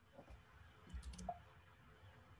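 Near silence with a few faint computer mouse clicks about a second in.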